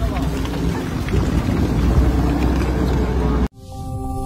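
Armoured military vehicle driving, its engine giving a steady low rumble with wind on the microphone and brief voices over it. It cuts off suddenly near the end, where a soft electronic music chime begins.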